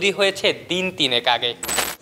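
A man narrating in Bengali, cut off about a second and a half in by a short, loud burst of hissing noise that lasts about a third of a second.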